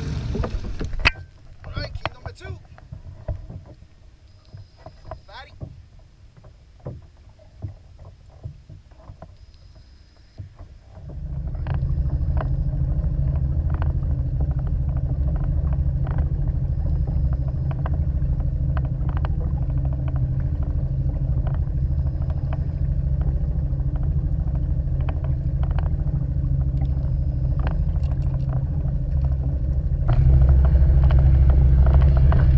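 Small outboard motor on a fishing kayak running steadily at a constant pitch, starting suddenly about eleven seconds in. Before it, only quiet scattered knocks and clicks of gear being handled.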